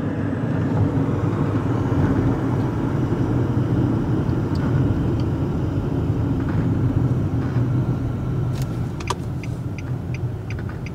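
Steady road and engine rumble heard inside a moving car's cabin. A few light, evenly spaced ticks begin near the end.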